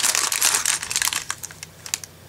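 Thin plastic bags crinkling as they are handled: a LEGO set's polybag wrapper and the clear bag of pieces inside it. The crinkling is dense at first and thins out toward the end, with a small click just before it stops.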